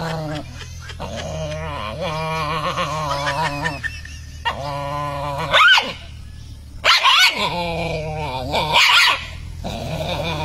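Dogs growling in long, wavering growls that rise several times into short sharp barks.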